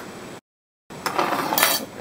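Metal canning lids and rings clinking and clattering against each other and glass jars, with sharp clicks about one and a half seconds in. A half-second of dead silence from an edit cut breaks it early on.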